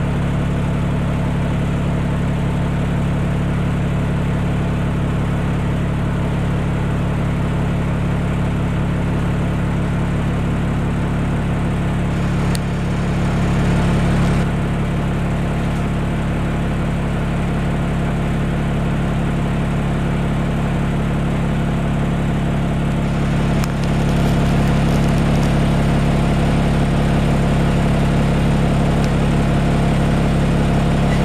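Cummins ISL inline-six diesel engine of a 2002 Neoplan AN440LF transit bus running at a steady, unchanging pitch, heard from inside the passenger cabin. It gets a little louder near the end.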